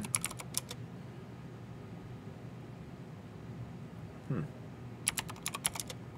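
Computer keyboard typing in two short bursts of quick keystrokes, one at the start and one about five seconds in.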